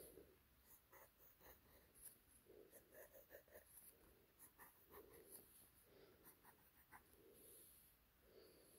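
Pilot Varsity fountain pen nib scratching faintly on paper in many short strokes, drawing small stars and a moon.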